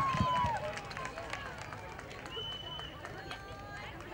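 Concert audience cheering and whistling, with the whistles dying away in the first half second. Scattered voices, shouts and claps from the crowd follow, with one short high whistle-like tone a little past the middle.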